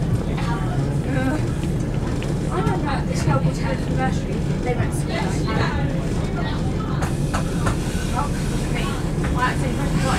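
Steady low rumble of a class 171 Turbostar diesel multiple unit running at speed, heard from inside the carriage, with indistinct voices talking over it.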